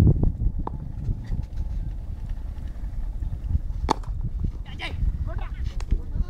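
Outdoor low rumble on the microphone with faint voices, and a single sharp knock about four seconds in.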